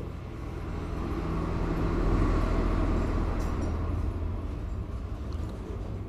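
Low rumble of a passing vehicle, swelling to its loudest about two seconds in and then slowly fading, over a steady low background hum.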